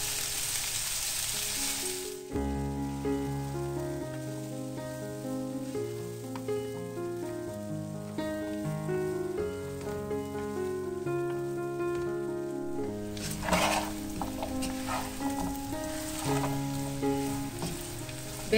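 Red beans frying in a large aluminium pot: a steady sizzle for the first two seconds, then background music of stepped, held notes takes over. From about thirteen seconds the sizzle returns with a wooden spoon stirring and scraping the beans against the pot, under the music.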